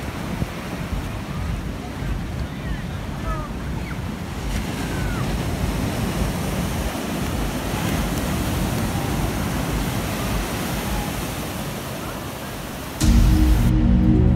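Surf breaking and washing up a sandy beach, a steady rushing noise with wind buffeting the microphone. About a second before the end, background music cuts in abruptly and is louder than the surf.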